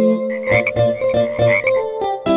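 Cartoon frog croak sound effects, a few croaks in quick succession, over an instrumental keyboard interlude of a children's song.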